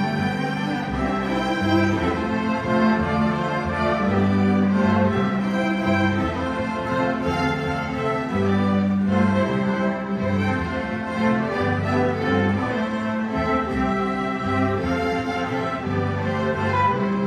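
A high school string orchestra of violins, violas, cellos and double bass playing a piece, with held notes in the low strings under the higher parts.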